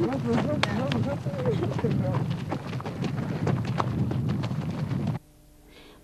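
Quick footsteps of people hurrying with a stretcher, many short clicks, under indistinct voices and wind rumbling on the microphone; the sound cuts off abruptly about five seconds in.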